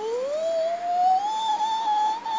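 A human voice imitating a wolf howl: one long 'oooo' tone that glides upward for about a second, then holds steady at the top.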